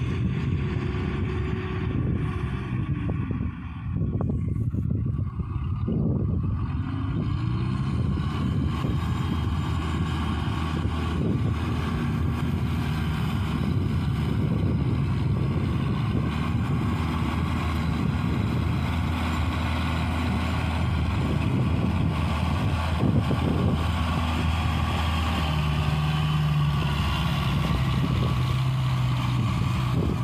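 Claas Talos farm tractor's diesel engine running steadily under load while ploughing a flooded rice paddy. Its pitch glides up and down during the first several seconds, then holds steady.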